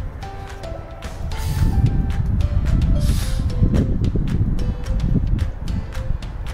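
Background music with a light, plucked-sounding melody and steady ticking beat, over low rumbling wind buffeting the microphone.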